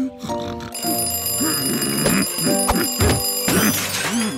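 Bedside alarm clock bell ringing continuously, starting about a second in and cutting off near the end.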